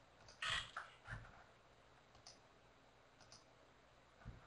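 Faint, near-silent room tone with a short hiss about half a second in and a few small, sharp clicks later on.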